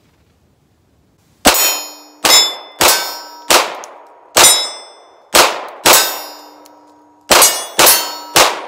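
About nine 9mm shots from a SAR B6C compact pistol fired in an irregular string after a brief pause, each followed by the ringing clang of steel plate targets being hit.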